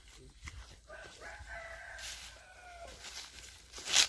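A rooster crowing once, faintly: one long call of about two seconds starting about a second in. A sharp click comes right at the end.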